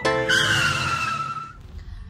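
A vehicle's tyres screeching as it brakes hard, a squeal falling slowly in pitch for about a second and a half before dying away, over a low engine rumble.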